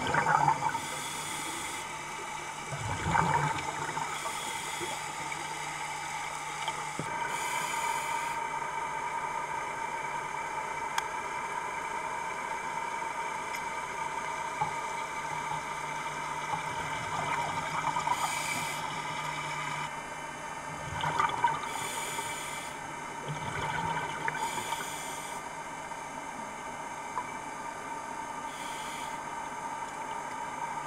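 Underwater sound of a scuba diver breathing through a regulator: hissing breaths and gushes of exhaled bubbles every few seconds, over a steady underwater hum.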